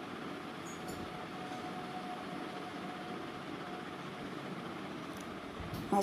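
A piece of rohu fish frying in hot oil in an iron kadai: a steady sizzle.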